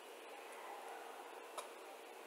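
Faint room hiss in a pause between spoken sentences, with a single soft click about one and a half seconds in.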